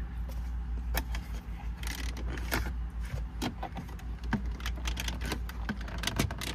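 Plastic pry tool working along a BMW F32 dashboard trim strip: irregular clicks and small snaps as the trim is levered away from its clips.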